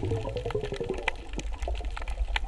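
Underwater water noise picked up by the camera while snorkelling: a steady low rumble with many scattered short clicks and crackles. Faint background music runs along with it.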